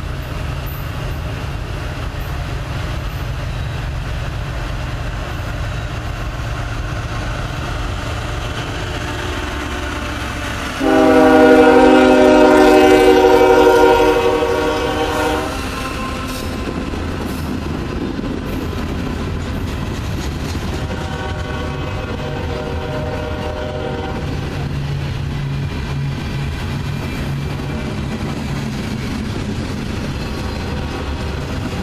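Norfolk Southern freight train's diesel locomotive passing close by, with a steady low rumble throughout. A loud horn blast of about four seconds comes near the middle, and a fainter horn sounds some ten seconds later as the freight cars roll past.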